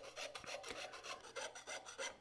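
Jeweler's saw blade cutting through thin copper sheet: a faint, quick, even run of rasping strokes.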